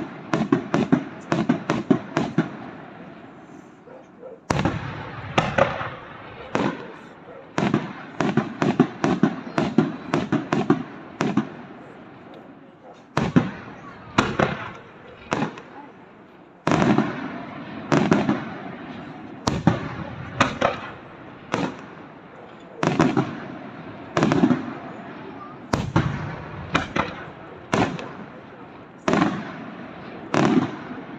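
Aerial fireworks shells bursting in the sky, a series of sharp bangs with crackle. They come in quick dense runs in the first half, then after a short lull as single bangs about a second apart.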